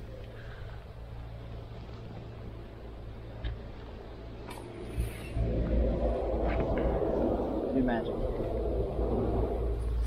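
Wind buffeting the camera's microphone, a steady low rumble that gets louder about five seconds in, with a few small clicks. A man says one word near the end.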